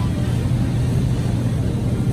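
Steady low hum and rumble of grocery-store background noise, with no distinct events.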